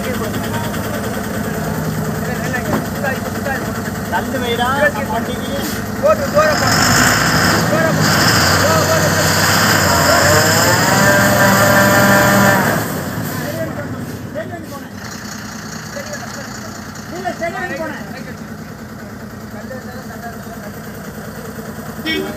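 Heavily loaded Ashok Leyland log truck's diesel engine running, revved hard for about six seconds in the middle with a rising pitch, then dropping abruptly back to a low steady note. The truck is straining to climb a steep hairpin under its load.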